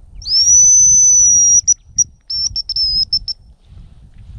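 A hazel grouse decoy whistle blown to imitate the male's song. One long, thin, high whistle rises briefly at its start and is held for over a second, then breaks into a run of short, clipped notes.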